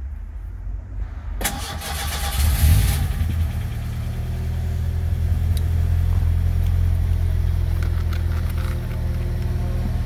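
1990 Ford Ranger engine cranked by its starter, turned with a screwdriver in the drilled-out ignition lock instead of a key. It catches about two and a half seconds in, then settles into a steady idle.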